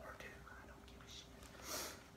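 Quiet room with a faint steady hum and soft breathy mouth sounds from a man between sentences, including a short breathy hiss near the end.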